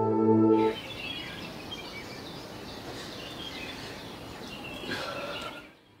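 Ambient music of held tones stops less than a second in, giving way to birds chirping over a steady outdoor hiss.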